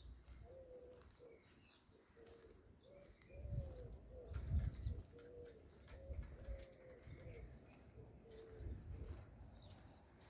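A pigeon cooing: a long run of short, low, slightly rising-and-falling coos repeated at an even pace. Low thuds and bumps on the microphone sit under the cooing, and the loudest of them comes just before the middle.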